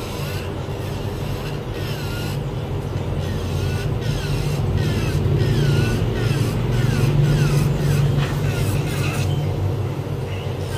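Electric nail drill grinding an artificial nail over the steady low hum of a nail dust collector fan, getting louder in the middle of the stretch.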